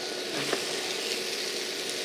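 Leeks, onions, mushrooms and squash sizzling steadily in a non-stick frying pan as a spatula stirs them, with a small tick about half a second in.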